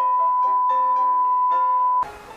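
A single loud, steady electronic beep tone, like a censor bleep, held for about two seconds and cutting off sharply, over background piano music.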